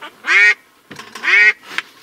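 A duck quacking twice, two loud, short, nasal quacks about a second apart.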